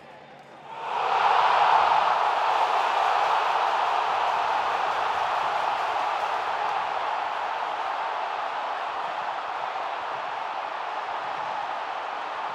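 Stadium crowd breaking into loud cheering about a second in, reacting to goal-mouth action at a football match, then holding on and slowly fading.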